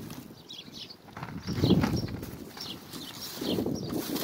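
Wind gusting against the phone's microphone, with the strongest rumble about a second and a half in and another near the end, over light rustling and knocking of items being handled.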